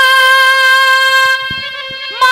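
A female folk singer holding one long, steady high note of a Haryanvi ragni into a microphone, the note thinning and falling off near the end.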